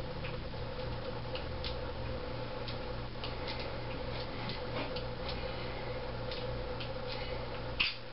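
Steady low hum of room tone with faint, irregular ticks scattered through it and a slightly louder click near the end.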